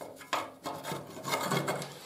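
Thin 22-gauge steel sample panel scraping and rubbing against a diamond-plate steel floor as it is turned over by hand: a short scrape, then a longer rubbing scrape.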